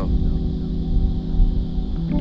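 Background music: a held chord over a low, rumbling bass.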